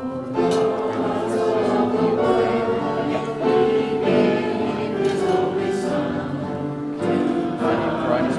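Church choir and congregation singing a hymn together, voices coming in about half a second in and holding long notes over a piano.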